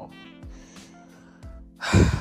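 Soft background music, then a loud sigh from a woman near the end.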